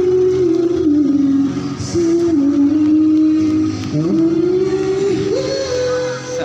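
Music: a slow melody of long held notes that slide from one pitch to the next, over a steady accompaniment.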